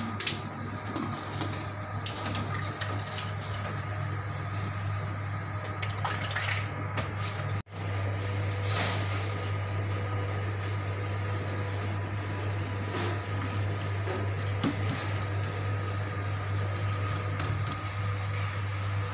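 Steady low machine hum, with a few faint clicks and knocks. The sound drops out for an instant about eight seconds in.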